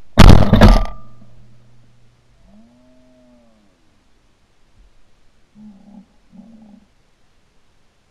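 A single shotgun blast, the loudest sound, dying away within about a second. After it come a faint low wavering tone about two to three seconds in and two short low sounds near six seconds.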